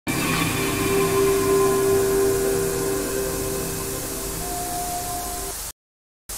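Loud hiss of static with steady electronic tones held underneath, a higher tone joining about four seconds in, as in an emergency-broadcast sound effect. It cuts off suddenly near the end.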